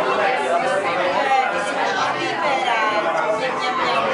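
Several people talking at once around a table: overlapping chatter of men's and women's voices.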